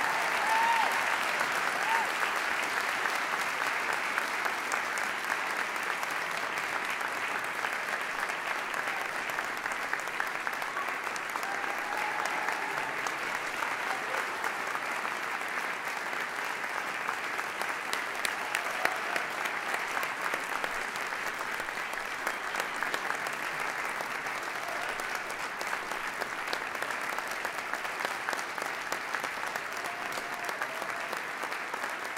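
Concert audience applauding, loudest at the start and easing slightly.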